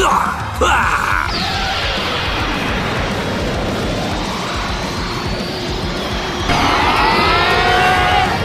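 Anime battle sound effects over background music: a dense, sustained energy-blast rush with a slowly rising whine. About six and a half seconds in it grows louder and a character's scream joins in.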